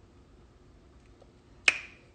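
A quiet pause broken by a single sharp click with a brief ring-off, about three-quarters of the way through.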